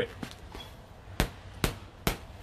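Two sharp thumps about half a second apart, with a faint click before them.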